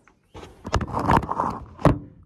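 Handling noise on the recording phone: rustling and scraping with several sharp knocks, the loudest knock near the end.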